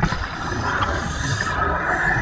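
A muffled, steady rush of bubbles and water, picked up underwater by a camera in its housing while the camera is jostled about.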